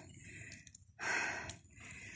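A short, breathy intake of breath about a second in, between spoken phrases, with faint quiet around it.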